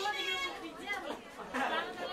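Chatter of several teenagers' voices talking and calling out over one another.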